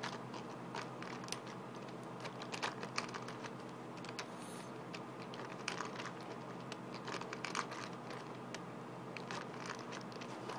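Laser-cut plastic legs and cams of a hand-cranked walker robot clicking and clattering irregularly as its camshaft is turned by hand.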